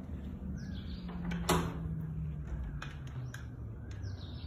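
A puppy at a closed wooden door: a few light knocks and rattles of the door, the loudest about a second and a half in, over a low steady hum, with short bird chirps in the background.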